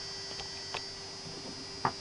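Running high-frequency oscillator circuit and the small DC motor it drives: a steady faint hum with a thin high-pitched whine over it, and a couple of faint ticks.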